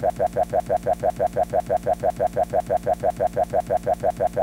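A short spoken syllable, 'fap', cut and looped into a fast, perfectly even stutter of about six or seven repeats a second.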